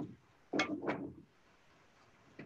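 Two quick clacks of kitchen things being handled, about a third of a second apart, early in the first second.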